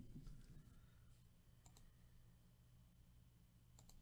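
Near silence: room tone with a faint low hum and a few faint clicks.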